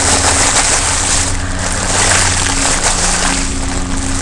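Helium rushing out of the neck of a foil balloon as it is inhaled by mouth: a loud, steady hiss of gas and breath.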